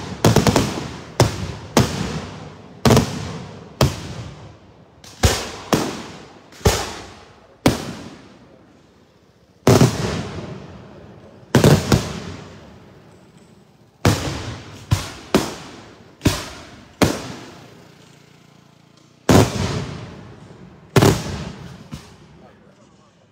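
Daytime aerial firework shells bursting overhead in a string of about twenty loud bangs, each followed by an echo that fades over a second. They come at irregular intervals, sometimes three or four in quick succession, with two short lulls.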